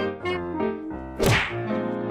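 Intro music with a sudden whoosh-and-thwack sound effect a little over a second in. The effect is the loudest sound and sweeps quickly down in pitch.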